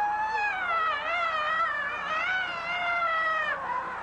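One person's long, high-pitched, wavering scream, stopping about three and a half seconds in: the cathartic screaming phase of dynamic meditation.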